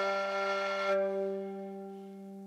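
Kamancheh, the Persian bowed spike fiddle, holding one long low note that gradually fades away, its upper overtones thinning out about halfway through.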